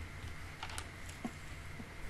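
A few faint, sharp clicks spaced irregularly over a steady low hum and hiss.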